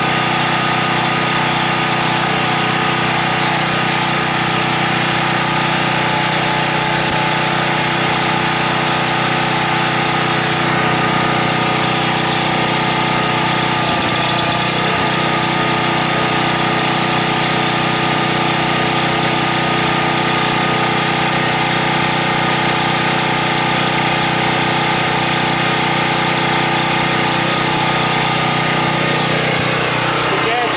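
Husky 1850 W portable generator's small OHV engine running steadily at an even pitch on natural gas, fed through a hose into the bottom of the carburetor with the main jet removed.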